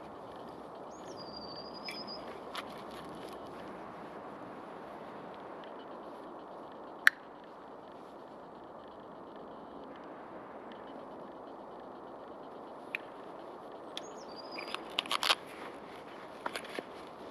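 One sharp click about halfway through, as the Cudeman MT-4 liner lock folding knife's blade swings open and locks. Around it are a faint outdoor hiss and two short bird chirps, and near the end a quick run of clicks and rustles as the knife is handled at its Cordura belt pouch.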